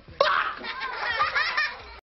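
Men laughing heartily, with a sudden loud burst of laughter about a fifth of a second in that carries on in bouts through the rest of the moment.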